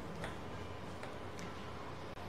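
Two faint plastic clicks as a lottery ball is handled in the clear acrylic capsule on top of a glass ball-drawing machine, over a low steady hum.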